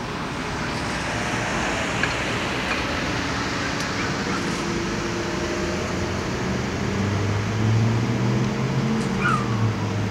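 Steady outdoor traffic and parking-lot noise, with a vehicle engine running low and steady from about seven seconds in.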